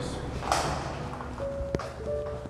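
A door being pushed open: a rush of noise about half a second in, then a single sharp click near the end.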